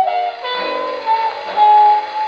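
A 78 rpm shellac jazz record playing on an HMV 102 wind-up portable gramophone: a horn plays a slow melody line of long held notes. The sound is thin and narrow, with no deep bass and no top.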